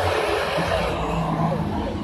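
A motor vehicle passing close by on the street: a steady low engine hum over rushing road noise.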